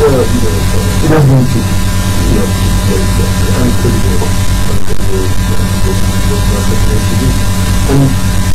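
Talk-show speech over a loud, steady electrical hum and buzz that runs under everything. The hum is typical of mains interference in the studio's audio chain.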